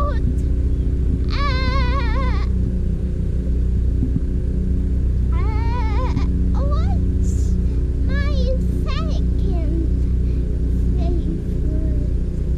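A child singing a few short, high-pitched phrases with a wobbling pitch, over a steady low rumble.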